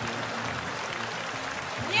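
Studio audience applauding, a steady clapping that holds at an even level; a voice starts speaking just at the end.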